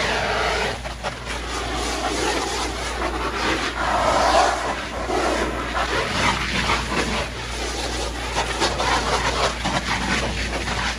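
Garden hose nozzle spraying a jet of water onto an inflatable vinyl pool slide, a steady hiss of spray splashing on the plastic, with a steady low rumble underneath.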